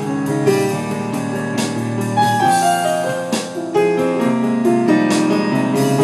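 Digital stage piano playing sustained chords and a moving melody in an instrumental passage, with a few drum or cymbal strokes.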